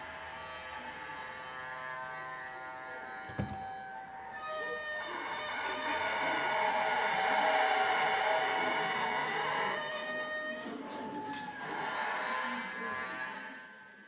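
Homemade one-string bowed fiddle, built on a drum body with a metal horn, playing long held notes rich in overtones. It swells louder through the middle, with a single knock about three seconds in.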